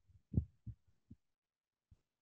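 Four short, soft low thumps over a video-call microphone, spaced irregularly, with dead silence between them.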